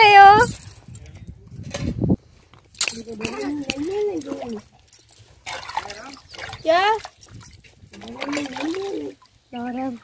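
Water splashing and sloshing in a steel basin as a baby is washed by hand, with several short wordless voice sounds in between.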